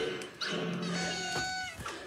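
A drawn-out, cat-like vocal cry from a cartoon soundtrack, played through a TV speaker. The cry rises at the start, then is held on one pitch for about a second.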